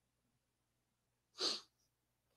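A person sneezing once, a short sharp burst about a second and a half in.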